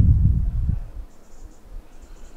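Low rumble of wind buffeting the microphone, dying away about three-quarters of a second in and leaving only a faint background.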